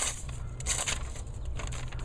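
Sheet of notebook paper rustling and crackling as a Benchmade Griptilian's S30V plain-edge blade slices through it, with a sharp crackle right at the start.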